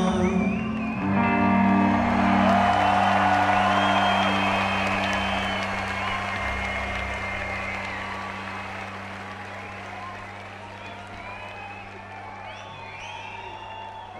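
A rock band's last chord held and slowly fading, with an arena crowd cheering, whistling and applauding over it.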